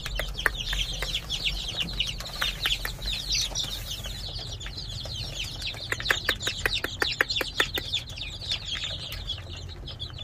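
A large brood of young chicks peeping nonstop, their many high chirps overlapping. About six seconds in comes a quick run of sharp taps lasting a couple of seconds.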